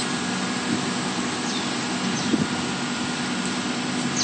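Steady vehicle engine and road noise: an even hiss over a low hum, holding one level.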